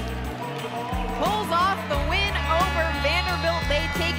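Background music with a steady, repeating bass line, laid over the highlights, with a voice over it.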